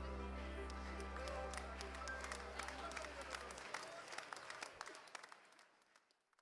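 The last chord of a recorded worship song rings out and dies away, with scattered applause and clapping over it. The sound fades to silence near the end.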